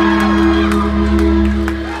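Stage keyboard holding a sustained chord over a steady low bass note through the hall's PA. The chord stops right at the end.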